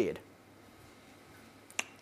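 A pause between speakers: faint room tone, broken near the end by a single sharp click just before speech resumes.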